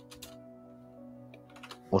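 Quiet background music of steady held tones, with a few light computer-keyboard clicks shortly after the start and again near the end.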